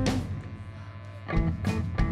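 Live rock band, with electric guitars, bass and drum kit: a chord and drum hit at the start ring out and fade, and the band comes back in about a second and a half later.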